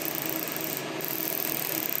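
Halo hybrid fractional laser running during treatment, giving a steady machine whir and hiss with a faint, broken low hum as the handpiece passes over the skin.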